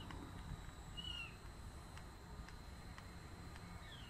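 Quiet background with a low rumble and a few faint, short, high chirping calls from an animal, one about a second in and another near the end.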